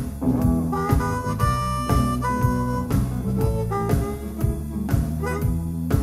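Live electric blues band: harmonica played into a hand-held microphone, holding long bending notes, over electric guitar, bass guitar and a steady drum beat.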